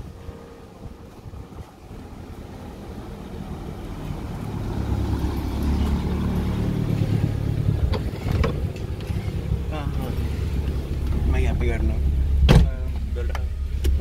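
Car engine running with a steady low rumble that builds over the first few seconds, with people talking over it and a single sharp knock near the end.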